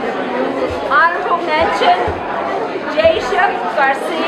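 Chatter of several people talking at once, voices overlapping, with no single clear speaker.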